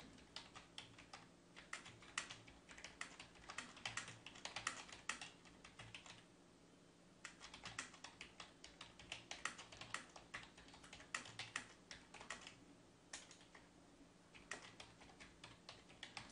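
Quiet typing on a computer keyboard: runs of rapid keystrokes, broken by two short pauses, one about six seconds in and one a little before the end.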